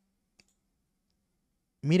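A single faint computer-mouse click about half a second in, otherwise near silence, then a man starts speaking near the end.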